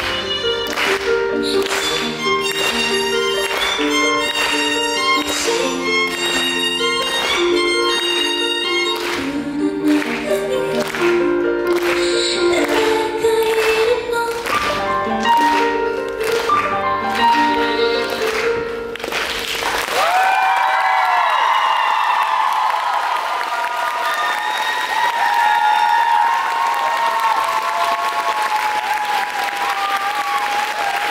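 Live band of violin over steady strummed and plucked strings playing the last bars of a song, which ends about two-thirds of the way through. The audience then applauds and cheers, with whoops.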